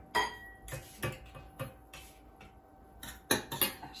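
Glass jar and small steel saucepan clinking as sugar is put into the pan for caramel: about five sharp clinks, the first ringing briefly.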